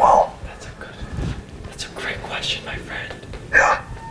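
A whisper amplified through a handheld megaphone, cut off just after the start, then a few short, quieter voice sounds, with one brief louder one a little past three and a half seconds.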